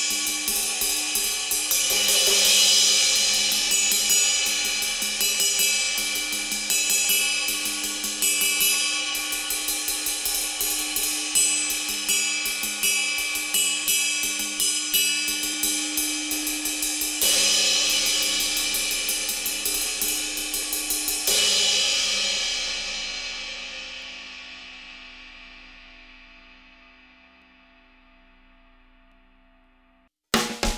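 Zultan 22-inch Dark Matter ride cymbal played alone with a drumstick: a fast, even pattern of stick strokes over a building shimmering wash, with louder swelling hits near the start and twice about two-thirds of the way through. The strokes then stop and the cymbal rings out, fading slowly to almost nothing near the end.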